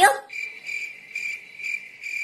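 Crickets chirping, a comedy sound effect for an awkward silence: a steady high trill that swells about twice a second, starting just after the speech stops.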